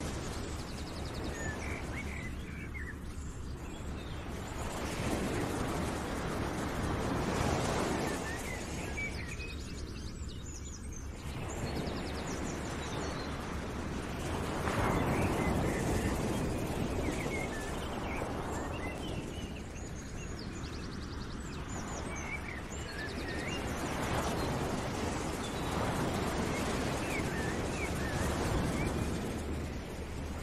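Background nature ambience: a rushing noise that swells and fades every five seconds or so, with small bird chirps throughout.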